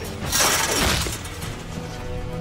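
A loud crash from a film fight scene a moment in, fading out within about a second, over the film's score.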